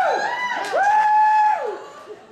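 A high falsetto voice calling out two long held notes, each swooping up, holding steady and falling away at the end, the second dying off near the end.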